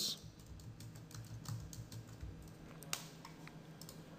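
Faint computer keyboard typing: a scattered run of separate keystroke clicks, with one louder click about three seconds in.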